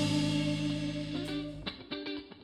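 Live jazz-fusion band: a held chord with upright bass, electric guitar and cymbal wash ringing out and fading, then stopping short. A few short picked electric guitar notes start near the end.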